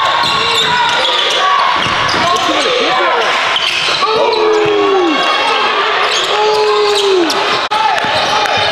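Basketball game sounds on a hardwood gym floor: the ball bouncing as it is dribbled, sneakers squeaking and players' voices calling out, echoing in the hall. The sound drops out briefly near the end.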